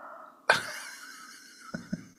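A short, sudden non-speech vocal sound from a person, like a cough, about half a second in, fading over the next second. Two faint clicks follow near the end.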